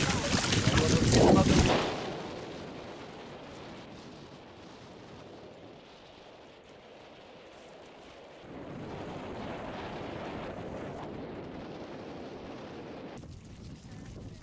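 Wind blowing on the microphone over open mudflats: loud and gusty for the first two seconds, then a fainter steady rush that grows louder again a little past halfway.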